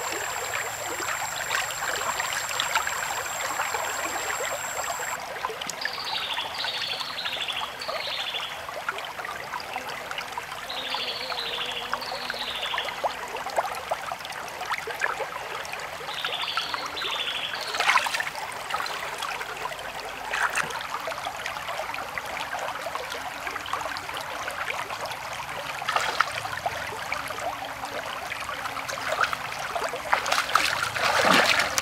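Shallow stream running over rocks, a steady trickling wash of water. Through the first half a bird calls in short runs of three quick falling chirps, and a couple of sharp clicks come just past the middle.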